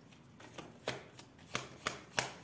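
A deck of tarot cards being shuffled and handled by hand, with a few soft card flicks and three sharp snaps of the cards.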